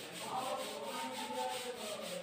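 Marker writing being wiped off a whiteboard by hand: a steady rubbing of skin against the board's smooth surface.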